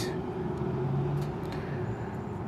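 Steady outdoor background hum of vehicle traffic, with a low hum swelling briefly about a second in.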